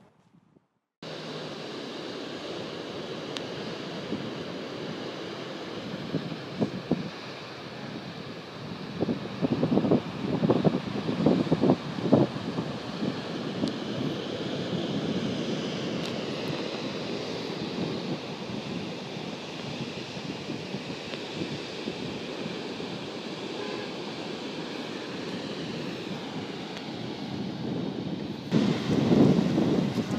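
Wind buffeting the microphone, with ocean surf beneath. The noise cuts in suddenly about a second in and gusts louder a few times around the middle and again near the end.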